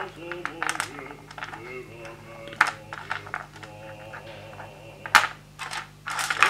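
Small rough opal stones clicking and tapping as they are handled on a hard tray, a run of sharp little clicks, the loudest about two and a half and five seconds in.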